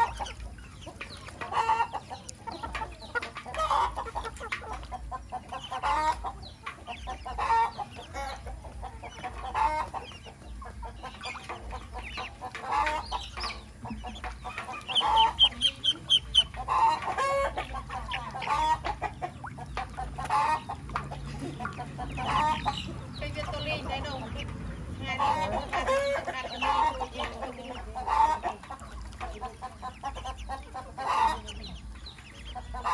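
Chickens clucking, short calls repeated every second or two, with a brief run of rapid high peeps about halfway through.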